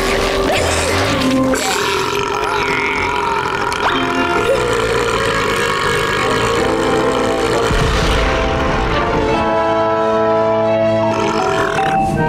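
A long, exaggerated cartoon burp after a gulp of fizzy cola, over background music; the music carries on alone in the last few seconds.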